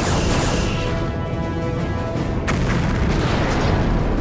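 Two sci-fi weapon-fire and explosion effects, each starting suddenly and then dying away: the first right at the start, the second about two and a half seconds in. Both sound over orchestral score music.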